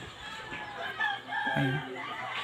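Chickens calling, with a rooster crowing: several short, high, gliding calls, loudest about a second in.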